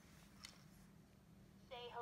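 Near silence with a faint steady hum and one soft click about half a second in; near the very end a voice starts in high, swooping tones.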